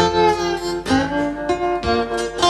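Acoustic guitar played live without singing, chords ringing on with new strokes about a second in and again near the end.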